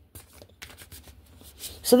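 A deck of oracle cards being shuffled by hand, a run of quick, soft papery flicks as the cards slide against one another.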